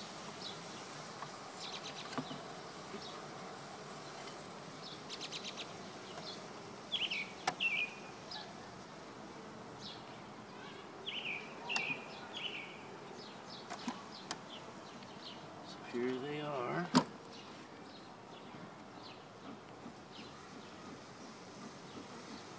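Honeybees buzzing steadily, kind of loud, around a hive that has just been opened and smoked. A few short falling chirps sound midway, and a single sharp click stands out about three-quarters of the way through.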